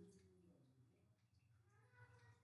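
Near silence: room tone, with a faint, brief pitched sound that wavers in pitch right at the start.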